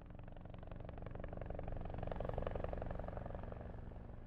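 Low engine-like drone with a fast, even flutter, swelling past the middle and fading out toward the end.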